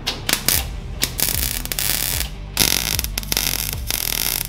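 Wire-feed welder arc crackling as nuts and bolts are tack-welded onto a beer can: two short bursts, then two longer runs of steady crackle.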